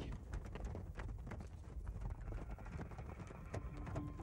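Horses' hooves clopping in a quick, uneven run of knocks, as of riders approaching.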